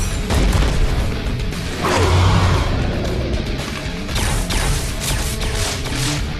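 Action-cartoon soundtrack: dramatic score under crashing, booming impact sound effects, with a heavy low boom about two seconds in.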